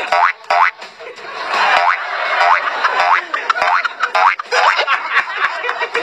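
Cartoon boing sound effects, springy rising twangs repeated over background music, most likely marking a character hopping on one leg to cure the hiccups.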